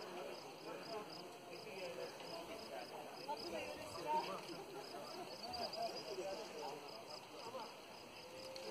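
Indistinct voices of several people talking over one another, with a faint, even chirping pulse of insects in the background.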